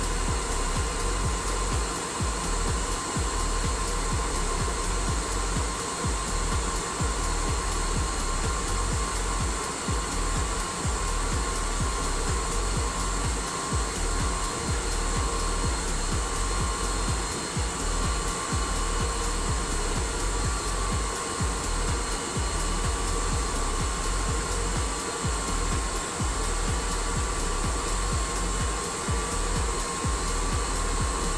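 Rolls-Royce RB211 turbofan being dry-motored by its pneumatic starter, with no ignition, while water and detergent are sprayed down the core for a compressor wash: a steady whizzing whine over a constant rushing noise that does not change.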